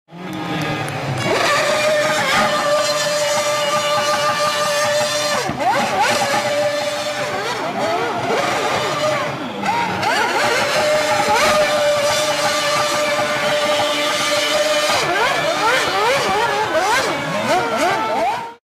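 High-revving racing car engine, its pitch climbing and then dropping back again and again as it shifts up through the gears, with long stretches held at a steady high pitch. Music plays along with it.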